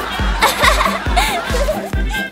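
Comedic background music with a steady thumping beat, with short wavering pitched sounds over it about halfway through and again later.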